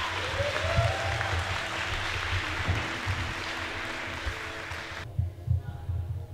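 Audience applauding, cutting off abruptly about five seconds in.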